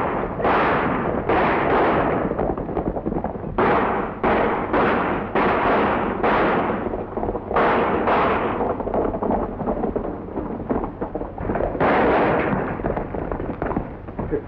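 Gunshots fired in rapid, irregular volleys, each a sharp crack with an echoing tail, a dozen or more in all, with a pause of a few seconds before a last couple of shots near the end.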